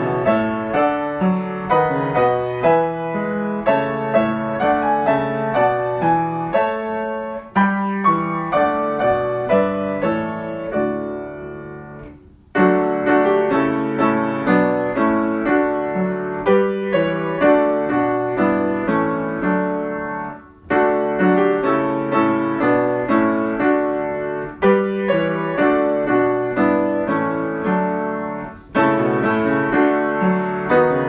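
Solo piano playing a hymn tune in full chords, a steady run of struck notes. Short breaks between phrases come about twelve, twenty and twenty-nine seconds in.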